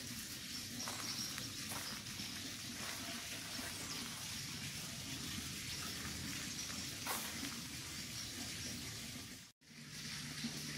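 Faint, steady background hiss with a few soft clicks, cut off for a moment near the end.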